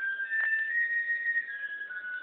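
High-register flutes playing a slow melody in unison, a single line of held notes that climbs step by step and then steps back down.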